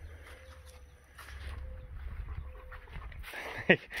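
A dog panting close to the microphone, with a person starting to laugh near the end.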